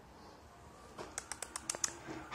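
Light footsteps clicking on a laminate wood floor: a quick run of about seven sharp ticks starting about a second in, after a quiet start.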